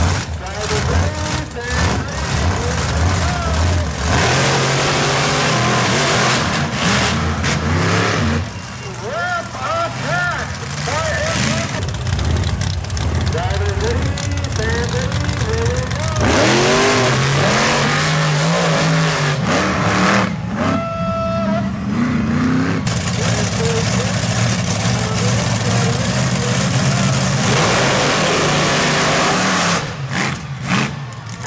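Monster truck engines running and revving, rising and falling in pitch, with long stretches of loud full-throttle noise.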